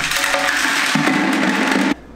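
Oversize rocks screened out of pay dirt poured from a plastic classifier screen into a plastic bucket: a dense, continuous clattering rattle that stops abruptly near the end.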